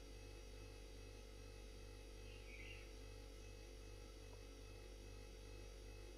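Near silence: a faint steady low hum with no clear sound from the pan.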